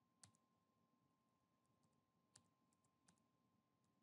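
Near silence broken by three faint, sharp clicks and a few fainter ticks between them, from a computer keyboard being used to edit text.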